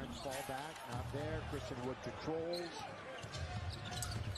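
Basketball game broadcast audio playing low: a commentator talking over arena crowd noise, with a basketball bouncing on the court.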